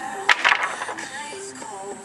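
A long wooden board picked up off concrete gives a sharp knock and a short clatter about a third of a second in, over background music with a melody.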